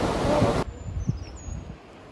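A loud, steady rushing noise cuts off suddenly about half a second in. It leaves a much quieter forest ambience with a couple of short, high bird chirps.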